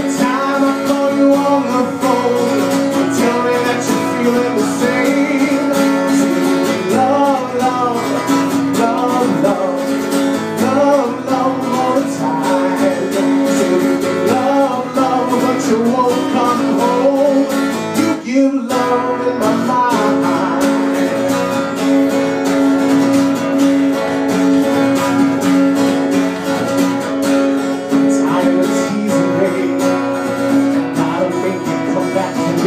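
Cutaway acoustic guitar strummed steadily in a live solo performance, with a man's voice singing over it in places. The playing drops out for a brief moment just past the middle.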